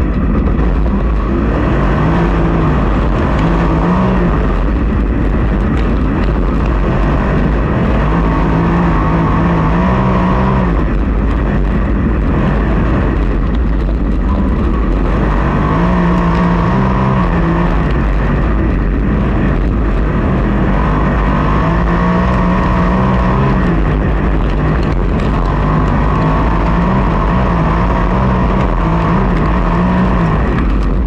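Onboard sound of a USAC sprint car's V8 running hard on a dirt oval. The engine note rises and falls in a repeating cycle about every six seconds as the throttle goes on and off through each end of the track.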